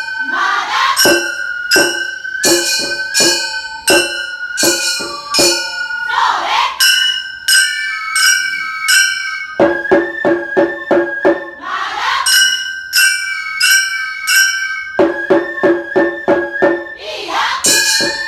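Gion-bayashi festival music: several small brass hand gongs (kane) struck in a quick, ringing, clattering rhythm, the 'konchikichin' of the Gion festival, over a sustained fue flute line and drum.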